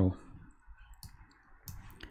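A few faint, short computer mouse clicks, about a second in and again near the end, over quiet room tone.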